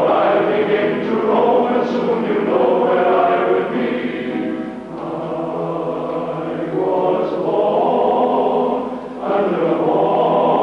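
Male voice choir singing sustained chords in harmony, with brief dips between phrases about five and nine seconds in.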